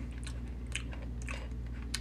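Soft mouth sounds of chewing the chewy nata de coco (coconut jelly) pieces from a mango juice drink, a few faint wet clicks, over a steady low hum.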